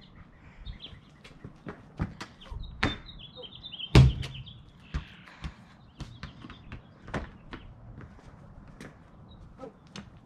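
Irregular thuds and knocks of a basketball bouncing on a concrete driveway and striking a portable hoop, the loudest about four seconds in. A bird chirps briefly in between.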